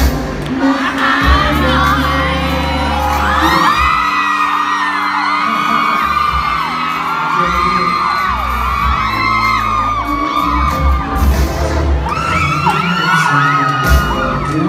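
A male singer performing a pop song live through a PA system over an amplified backing track. Over it a crowd of fans shrieks and cheers in many overlapping high cries, starting about three and a half seconds in, pausing briefly near eleven seconds and rising again near the end.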